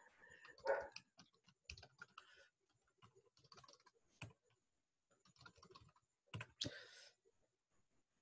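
Faint, scattered computer keyboard typing and clicks, with a short, louder burst of noise near the end.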